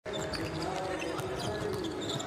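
A basketball being dribbled on a hardwood court, a few faint knocks over a steady background of arena crowd voices.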